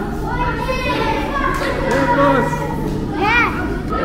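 Children talking and laughing together, their voices high and lively, with one child's high-pitched voice rising and falling about three seconds in.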